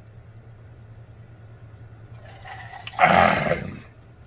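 A man drinking from a large tumbler, the swallows barely audible, then one loud breathy exhale lasting under a second about three seconds in.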